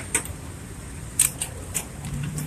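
A few short, sharp metallic clicks and rattles from an ambulance stretcher's frame as it is pushed and latched into the back of the ambulance, over faint street noise.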